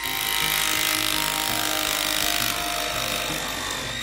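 Makita cordless jigsaw running steadily as its reciprocating blade cuts through a thin sheet of Masonite hardboard.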